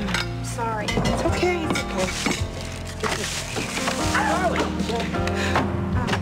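Background music with sustained chords, with short wordless vocal sounds from a woman over it.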